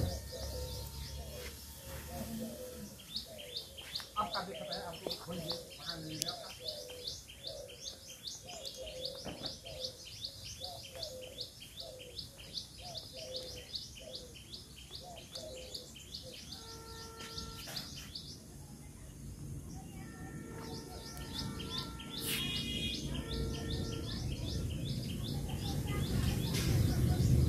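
Birds chirping in a long run of short, high calls repeated about three a second, pausing and resuming in the second half, over faint background voices.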